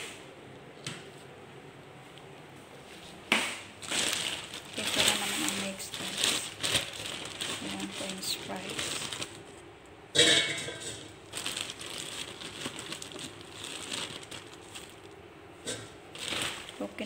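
Plastic bag of frozen french fries crinkling and rustling as it is handled and the fries are shaken out into a fryer basket. Loud rustling starts about three seconds in, with another loud burst about ten seconds in.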